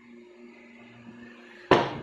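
A faint steady low hum, then near the end a single sharp knock as a cardboard model kit box is handled, with a softer knock just after.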